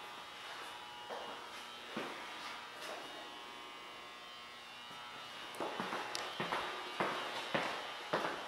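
A steady electric buzz with several fixed tones, as from a small motor or fan. In the second half, footsteps on a tile floor start up.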